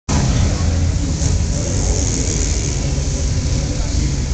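Two sport motorcycles' inline-four engines running loud with a steady low note at a drag strip start line.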